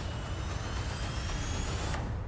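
Trailer sound design under the closing title card: a dense, heavy engine-like rumble with a few thin whines rising in pitch, as of a spaceship powering up.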